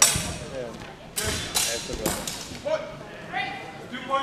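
Steel training swords clashing in a large hall: one sharp, loud strike right at the start, then three more quick strikes between about one and two seconds in.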